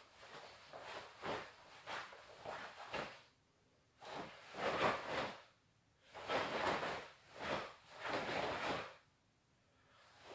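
A karateka's forceful breaths and the swish of his gi with each block and punch of a kata. Quick bursts come about twice a second for the first three seconds, then, after a short pause, a few longer ones.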